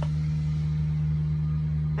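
Ford F-250 Super Duty pickup idling: a steady low hum.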